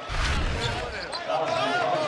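Basketball arena sound during a stoppage in play: crowd noise and voices from the floor, with a low rumble in the first second.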